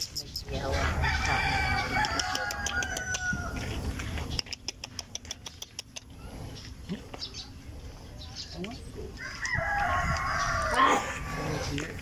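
A rooster crowing twice: one long crow starting about a second in, and another near the end. A run of quick clicks comes between them.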